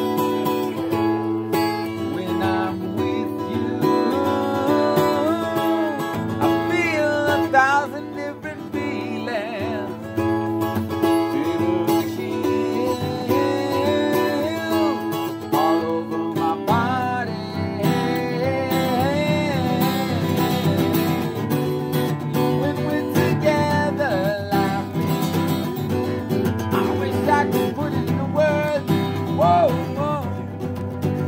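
Acoustic guitar played live, strummed and picked chords, with a voice singing a gliding melody over it. About halfway through the low end of the playing gets fuller.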